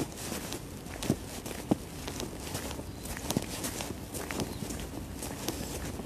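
Footsteps on slushy, icy pavement, an irregular run of short scuffing steps over faint outdoor background noise.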